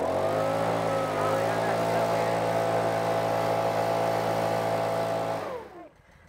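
Backpack leaf blower revving up and running at a steady high speed with a strong rush of air, then winding down about five and a half seconds in.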